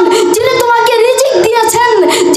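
A young boy preaching into a microphone in a sing-song, chanted delivery, his high voice holding and bending long notes.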